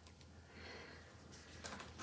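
Near silence: room tone, with a faint soft breath-like hiss about half a second in and a few faint clicks near the end.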